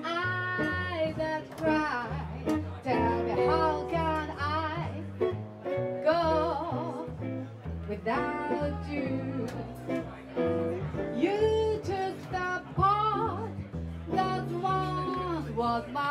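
Live jazz: an archtop guitar plays melody lines over a walking upright bass, with no break in the music.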